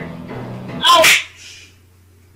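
One short, loud, breathy vocal outburst about a second in, falling in pitch, over a low steady hum.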